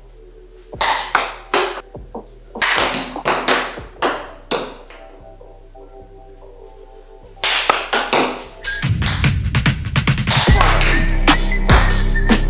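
Table tennis ball struck by a paddle and bouncing, a string of sharp clicks over quiet background music. About halfway through, the music gets much louder and a heavy bass beat comes in.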